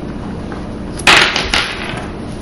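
A brief handling noise about a second in, a short scrape or clatter as the multimeter probes and condenser are handled, over a steady low hum.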